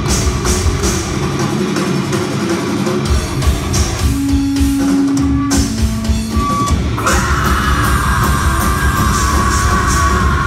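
Live heavy metal band playing loud, with distorted electric guitars and a drum kit, heard from the crowd floor of the venue. The low end thins out for a moment about two seconds in, then the full band returns, and a sustained high tone comes in about seven seconds in.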